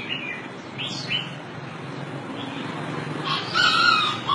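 Rooster calling: a loud, short squawk near the end, after a few brief high chirps about a second in.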